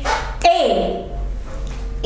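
A short cry about half a second in that slides down in pitch after a sharp start.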